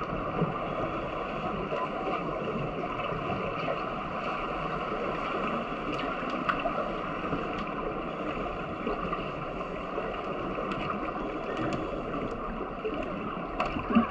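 Underwater pool ambience picked up by a submerged camera: a steady, muffled rushing noise with a few faint scattered clicks.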